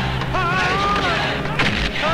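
Action-film fight soundtrack: a wavering high tone over a steady low drone, then one sharp, heavy impact effect about one and a half seconds in.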